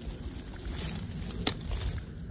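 Low, steady rumble of wind on the microphone, with one sharp click about a second and a half in.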